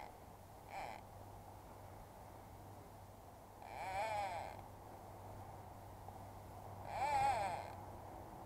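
Sheep bleating, three wavering calls: a short one about a second in, then longer ones at about four and seven seconds.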